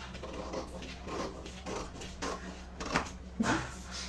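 Scissors snipping through paper pattern sheet in a few irregular strokes, with paper rustling, as a V-neckline is cut out of a bodice draft.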